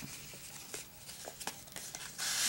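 Faint rustling of a kraft-paper envelope being handled and pulled open, with a few light paper ticks.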